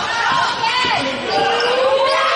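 Basketball game on a hardwood court: sneakers squeaking in short, high squeals as players cut, a ball being dribbled, and players' and spectators' voices calling out.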